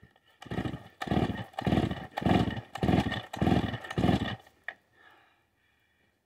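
Vintage Stihl 045 AV two-stroke chainsaw being pull-started: about seven quick pulls of the recoil starter in a row, each turning the engine over briefly, without the engine catching.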